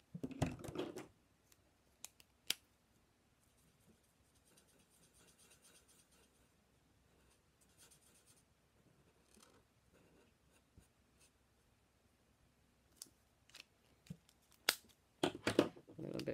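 Faint, soft scratching of a marker tip colouring on cardstock, with a few sharp light clicks, the loudest near the end.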